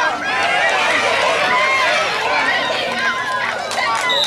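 Spectators shouting and cheering during a youth football play, many raised voices overlapping at once.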